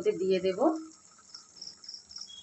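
A voice trails off in the first second. Then a faint insect chirping follows, a quick even series of short high chirps, about four or five a second, typical of a cricket.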